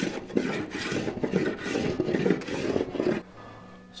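Small block plane shaving wood off the edge of a wooden keel in a quick run of short strokes, roughing out a bevel. The strokes stop about three seconds in.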